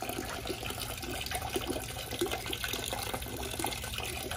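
Filtered water pouring from a clear PVC hose into a plastic bucket of water, splashing steadily as the pump-and-filter system recirculates it back into the bucket.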